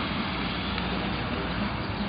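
Steady street noise: a constant hiss of traffic, with no single event standing out.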